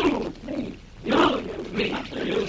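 A person's voice making low vocal sounds without clear words, in a few short bursts.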